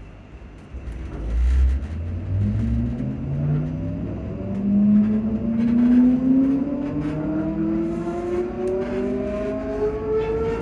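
Traction motors of a Class 334 Juniper electric multiple unit whining as the train accelerates. A cluster of tones starts about a second in, climbs in steps at first, then rises smoothly in pitch as speed builds.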